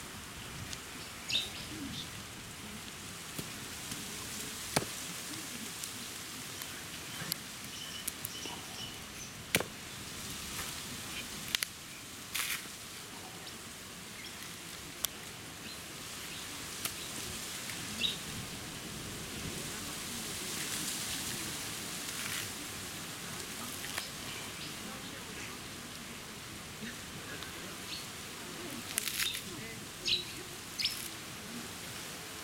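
Coconut being husked on a sharpened stake: a dozen or so scattered sharp cracks and knocks as the nut is driven onto the point and the fibrous husk pried off. Birds chirp now and then over a steady outdoor hiss.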